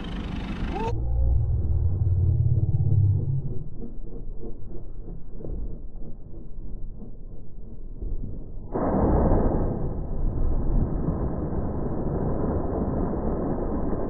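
Slowed-down, deep-pitched sound of a crab pot being thrown overboard into the sea: first a low rumble, then about nine seconds in a sudden muffled rush of splash-like noise that carries on.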